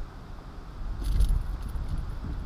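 Low wind rumble on the microphone, with faint light clicks about a second in.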